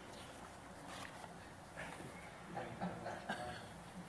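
Faint room sound of people moving about and murmuring quietly, with a few soft sharp clicks.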